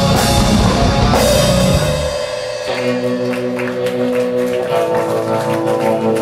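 Rock band playing live: drums, bass and distorted guitar together, until about two seconds in the drums and low end drop away, leaving held guitar chords ringing and changing every second or so.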